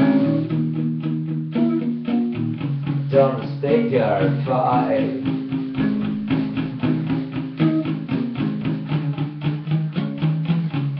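Electric guitar played through a small combo amp, strummed in quick, even strokes over held low notes.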